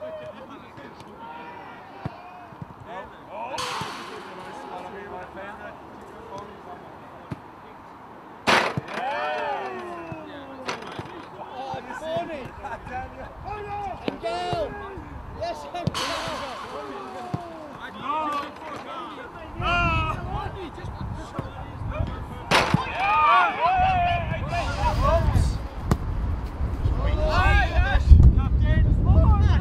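Footballs being kicked on a training pitch: four sharp ball strikes, several seconds apart, among players' shouts and chatter. Wind rumbles on the microphone in the second half.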